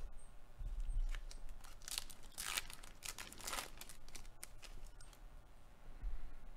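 Foil wrapper of a Topps baseball card pack being torn open and crinkled by hand, in a few short rustles, the strongest about two and three and a half seconds in.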